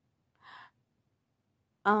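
A woman's short, faint intake of breath about half a second in, otherwise near silence, before her voice resumes with "um" at the very end.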